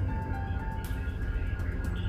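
Background music from a documentary score: a low, steady drone under a sparse melody of held high notes that step from one pitch to the next, with a fast, light ticking pulse.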